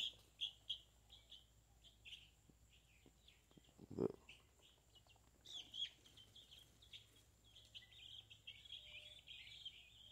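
Faint, high cheeping from a small flock of chicks: many short calls repeated throughout, coming thicker from about halfway in.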